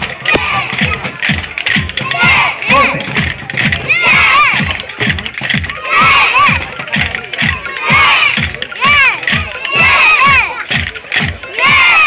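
A group of children beating plastic barrels with sticks in a fast, steady beat of about three strokes a second, with the whole group shouting together in time every second or two.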